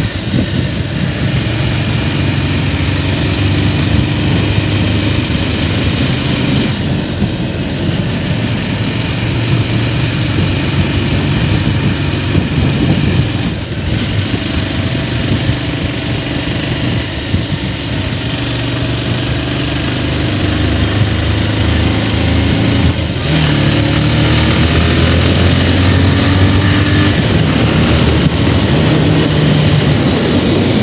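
Motorcycle engine running as the bike is ridden along a winding road. About two-thirds of the way through the engine note gets louder and rises as the bike accelerates.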